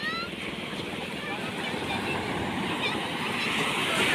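Surf breaking and washing up a sandy beach, a steady rushing that grows louder towards the end, with faint distant voices calling.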